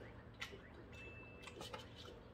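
Metal chopsticks clicking against each other and the frying pan: a few light, sharp ticks, several close together in the second half, with a brief thin high ring a little after the first second.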